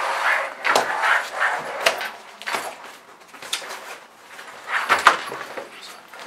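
Soft-sided pet carrier made of 600D Oxford fabric being folded flat by hand: irregular rustling and scraping of the stiff fabric panels, with several sharp knocks as the panels fold over.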